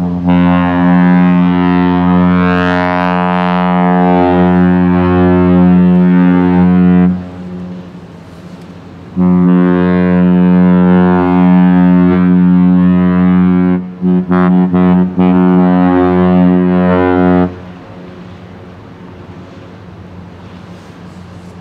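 A P&O cruise ship's horn sounding two long, deep, steady blasts of about seven and eight seconds with a short gap between. It is a farewell salute between fleetmates.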